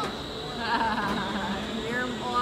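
Distant voices and shrieks of riders on a spinning, flipping thrill ride, loudest about a second in, over a steady high-pitched whine.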